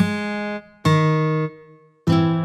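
Two chords on a sampled acoustic guitar software instrument, each strummed and held about half a second before cutting off. The second chord leaves a short fading ring.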